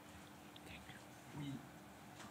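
Quiet meeting-room tone with a steady faint hum, and a brief faint murmured voice about a second and a half in.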